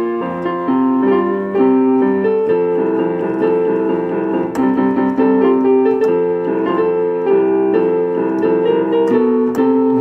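Piano-voiced keyboard playing a tune over held chords.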